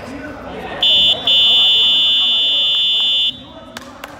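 Basketball game buzzer sounding in a sports hall: a short blast, a brief break, then one long steady blast of about two seconds that cuts off sharply.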